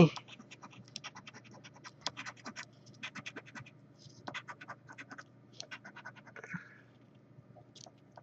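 A coin scratching the latex coating off a paper scratch-off lottery ticket, in quick runs of short, rasping strokes with brief pauses. The strokes thin out near the end.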